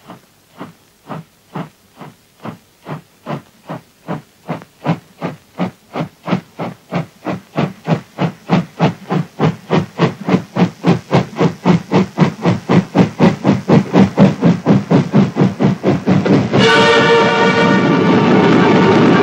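Steam locomotive chuffing on an old film soundtrack, its beats speeding up from about two to about four a second and growing steadily louder as the train comes on. A loud held tone breaks in about a second and a half before the end.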